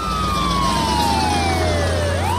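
Ambulance siren wailing, one slow sweep sliding down in pitch, over a steady low engine hum.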